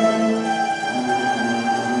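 Mandolin orchestra of mandolins, mandolas, guitars and double bass playing together, several parts moving in held notes that change pitch every half second or so.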